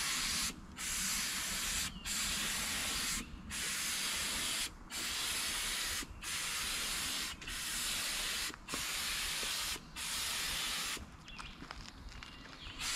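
Cheap Harbor Freight gravity-feed air spray gun hissing as paint is sprayed in about nine passes of a second or so each, with brief breaks between trigger pulls; the hissing stops about a second before the end. The gun is still set up wrong: fluid flow too high and air pressure a little lower than recommended.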